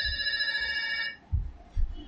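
A steady high-pitched electronic tone, held without change, that cuts off suddenly about a second in, followed by two low thumps.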